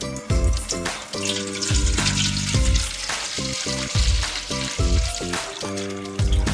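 Water pouring from a hose into a metal tub, a steady rushing hiss, under background music with a beat and low bass notes.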